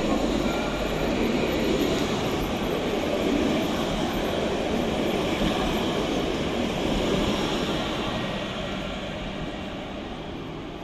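Alstom Citadis light-rail tram rolling past at close range: a steady rumble of steel wheels on rails with a faint whine. It fades over the last two or three seconds as the tram moves away.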